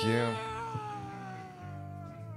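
A long, drawn-out meow-like vocal call that slowly falls in pitch and fades away, over a steady low music bed.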